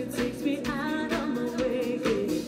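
Live pop band playing with a woman singing the lead, over electric bass, keyboard and drums with a steady beat.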